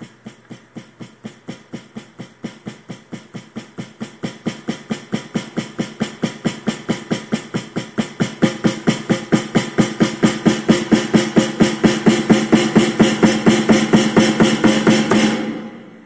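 Snare drum struck with even single strokes, about five a second, in one long crescendo from very soft taps to full-force hits that stops shortly before the end. The strokes are picked up by an FSR on-head trigger, and their rise from soft to hard spans the entire MIDI dynamic range.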